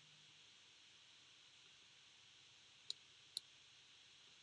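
Near silence: room tone, with two short computer mouse clicks about half a second apart near the end.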